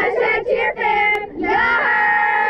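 A group of girls singing a chant together in unison: a few short syllables, then one long held note starting near the end.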